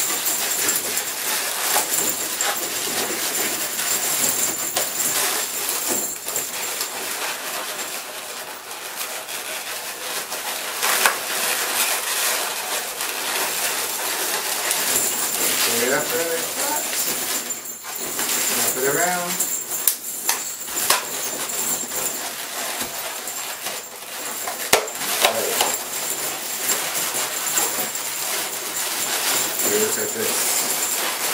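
Latex twisting balloons rubbing and squeaking as they are handled and twisted together, with a few short squeaks that glide in pitch about halfway through and again later.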